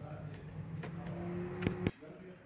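Spark plug socket and extension being worked in an engine's plug well, giving a few sharp metallic clicks, the loudest two near the end. Underneath is a steady low hum that cuts off suddenly just before the end.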